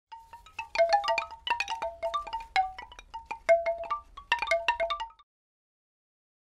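A jumble of bright, bell-like chime notes struck irregularly at several pitches, each ringing briefly, like wind chimes. They stop abruptly about five seconds in.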